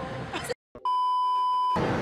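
A brief dropout to dead silence, then a steady electronic bleep lasting about a second, the kind edited in as a censor beep.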